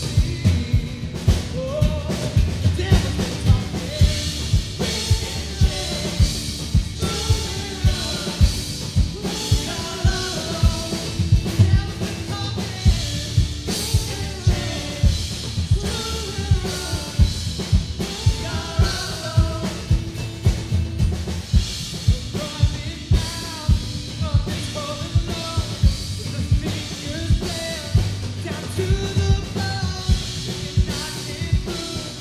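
Live rock band playing: a drum kit keeps a steady beat on bass drum and snare under electric guitar and singing.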